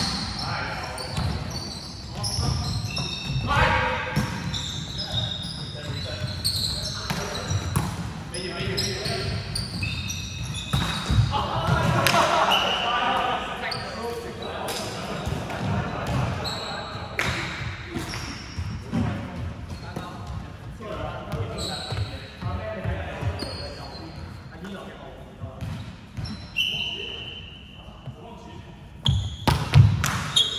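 Indoor volleyball play in a large, echoing sports hall: repeated sharp knocks of the ball being hit and landing, short high squeaks of sneakers on the wooden court, and players calling out.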